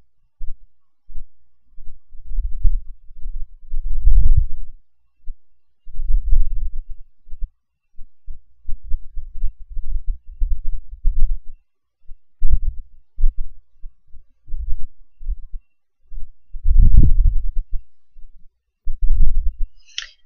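Irregular low thumps and rumbles on the microphone, coming in uneven clusters with short silent gaps between them, like bumps or handling noise reaching the mic.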